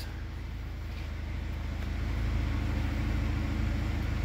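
Turbocharged four-cylinder engine of a 2017 Buick Envision idling: a steady low hum that grows slightly louder about halfway through.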